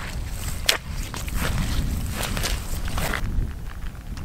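Footsteps swishing and crunching through dry moorland grass and heather, about half a dozen irregular steps, over a low rumble of wind on the microphone.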